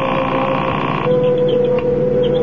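A telephone ringing, one ring about two seconds long that cuts off about a second in, over a steady held tone.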